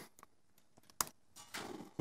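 A few sparse computer keyboard keystrokes, sharp single clicks, the loudest about a second in.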